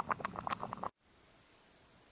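Oatmeal boiling in a camping pot on a small gas stove: rapid irregular bubbling pops over a steady low burner sound. It cuts off abruptly about a second in, leaving only a faint steady background hiss.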